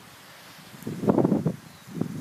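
A brief burst of people laughing about a second in, over a quiet outdoor background of breeze.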